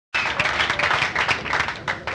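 Audience applauding, dense at first and thinning out near the end.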